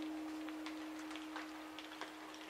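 A single held guitar note slowly fading out in a quiet gap of an instrumental rock track, with faint scattered ticks and crackles over it.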